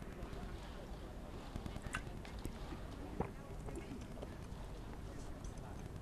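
Faint ambience of a nearly empty football stadium: a low steady rumble with a few scattered, distant shouts from players and occasional short knocks.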